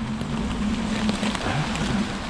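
Homemade three-wheel electric mobility scooter's motor humming steadily as it turns, its tyres crackling over a carpet of fallen leaves.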